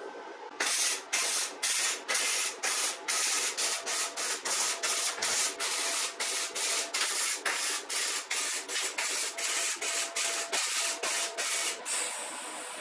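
Electric arc welding on a steel tube frame: the arc crackles and hisses in short, even bursts, about two to three a second, as a seam is laid in a series of quick stitch welds.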